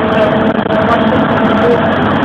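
Bus engine and road noise heard inside the moving bus's cabin, recorded on a mobile phone: a loud, steady drone with many small knocks and rattles.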